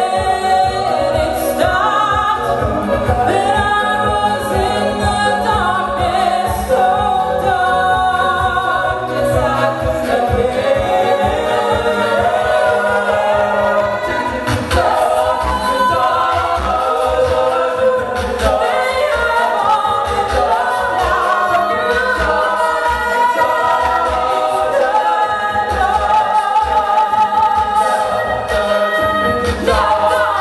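Mixed a cappella group singing into microphones through a PA: a female lead over layered vocal harmonies, with a vocal-percussion beat pulsing underneath.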